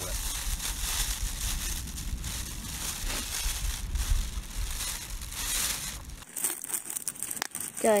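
A plastic snack wrapper crinkling as it is handled, over a low rumble; the sound stops abruptly about six seconds in, leaving a few light clicks.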